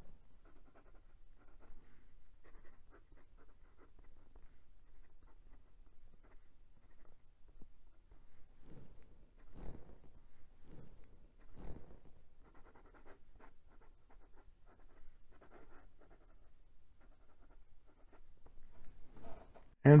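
Steel fountain pen nib writing on lined notebook paper: faint, quick scratches of pen strokes as a line of handwriting is written, with a few soft low thumps near the middle.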